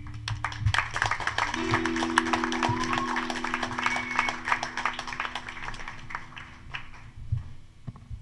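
Audience applause, dense hand clapping, over a held low chord from the band. The clapping thins out and fades about seven seconds in, while the chord carries on.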